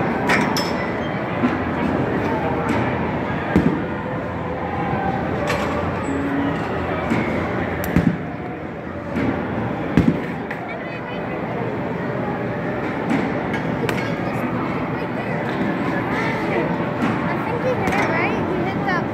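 Batting-cage sounds: a handful of sharp knocks and cracks from a bat hitting pitched balls and balls striking the cage netting, the loudest about 3.5, 8 and 10 seconds in. Underneath is a steady hall background with faint voices.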